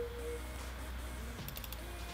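A few quick, faint clicks at the computer about three quarters of the way in, over a low steady hum.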